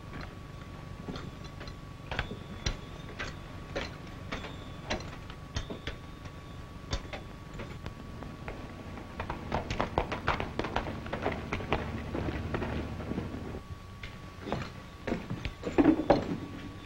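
Footsteps and knocks on a wooden floor: single, unhurried steps in the first half, then a busier run of steps and scuffling, and a louder thump at the very end such as a door. Beneath them runs the steady faint hum and hiss of an old film soundtrack.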